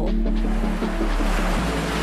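A steady rush of sea water and waves under background music.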